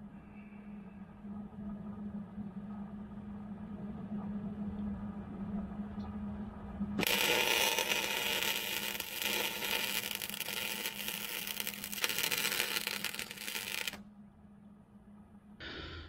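Electric arc welding on the steel wedge of a log splitter: a steady crackling, hissing arc that starts about halfway through, runs for about seven seconds and then stops.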